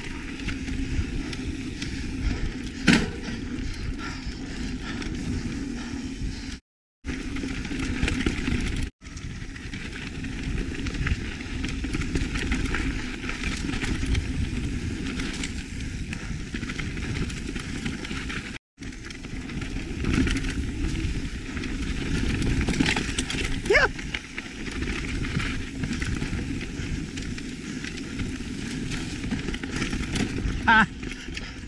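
Lapierre mountain bike ridden along a dirt forest singletrack, heard from a camera on the bike: steady tyre and trail noise with chain and frame rattle and a low wind rumble. There is a sharp click about three seconds in and a short squeak about three-quarters of the way through. The sound cuts out briefly three times.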